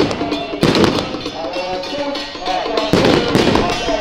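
Strings of firecrackers crackling in dense bursts: one at the start, another just under a second in, and a longer one around three seconds in. Under them runs procession music with a steady percussion beat.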